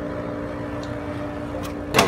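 A thrown hatchet strikes and sticks in a tree trunk with a short, sharp knock near the end, over a steady low hum.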